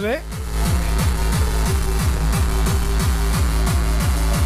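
Makina electronic dance music playing from a club DJ-session recording: a fast, steady kick-drum beat under a held synth note.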